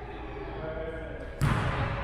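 A badminton racket strikes a shuttlecock once, sharply, about one and a half seconds in, over a low murmur of voices in the hall.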